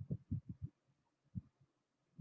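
A few faint, soft low thumps, a quick run of about five in the first second and one more near the middle.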